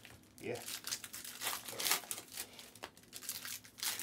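Trading cards and their packaging being handled, with irregular crinkling and rustling.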